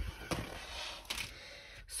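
A large diamond painting canvas being flipped over and laid back down on a wooden table: a soft thud at the start, then paper-and-plastic rustling and a couple of brief scuffs as it is handled.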